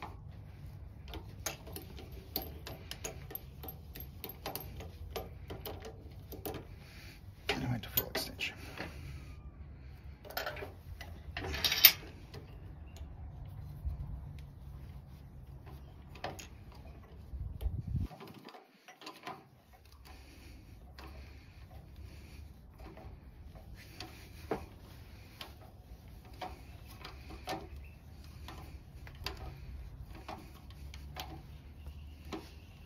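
Fountain pen kit parts being pressed together between the lathe's tailstock and headstock: irregular small clicks and ticks of metal and plastic parts and the tailstock mechanism, with one sharp, loud click near the middle.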